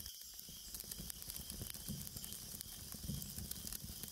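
Faint, steady hiss with soft crackling.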